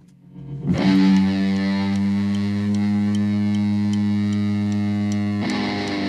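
Electric guitar strikes a chord about a second in and lets it ring out, held steady with a strong low note beneath, moving to a new chord near the end as a song opens. Faint regular ticks sound above the held chord.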